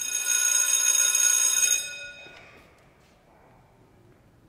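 An electric school bell rings steadily for nearly two seconds, then dies away.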